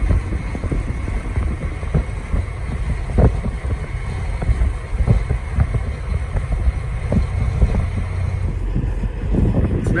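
Wind gusting against the microphone: an uneven low rumble with a few soft knocks.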